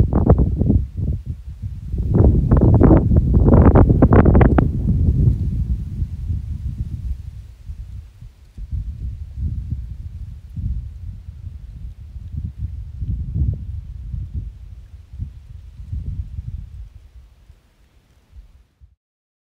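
Wind buffeting a handheld camera's microphone: an uneven low rumble in gusts, strongest a few seconds in, then weaker pulses that die away near the end.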